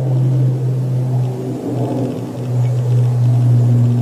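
A steady low hum, with fainter wavering tones above it.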